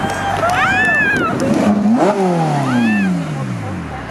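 Ferrari 458 Spider's V8 engine idling, then revved once about two seconds in, the revs falling away slowly over the next two seconds.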